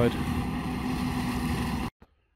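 New Holland tractor running a PTO-driven flail hedge trimmer: a steady engine drone with a held mechanical hum. It cuts off suddenly near the end.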